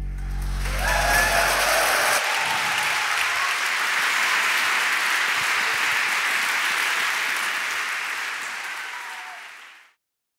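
Concert audience applauding. The band's last held low chord rings under the start of the applause and stops about two seconds in. The applause then runs steadily and fades out near the end.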